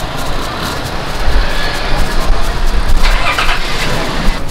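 Outdoor street noise with a heavy, uneven low rumble.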